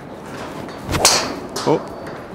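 A golf driver, the Callaway Ai Smoke Max D, swung off a mat: a swish and a single sharp crack of the clubface striking the ball about a second in.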